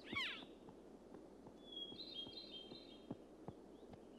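An elk gives one short, high mewing call at the very start, then a small bird trills briefly about two seconds in, with faint scattered clicks in the background.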